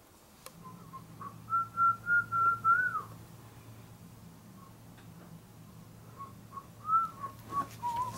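A person whistling a short tune: a run of clear held notes in the first few seconds, the last bending up and dropping away, then a few shorter notes near the end.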